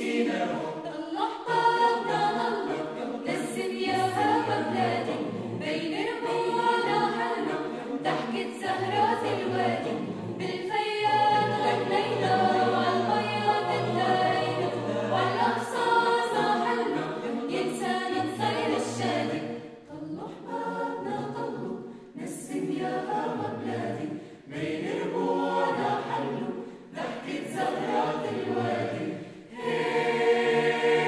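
Mixed choir of men's and women's voices singing a cappella in several parts, with short breaks between phrases in the last third.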